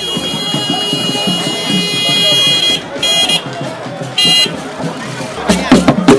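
A high-pitched horn sounds one long blast of about three seconds, then two short blasts, over crowd voices. Loud drum or wood-block strokes start near the end.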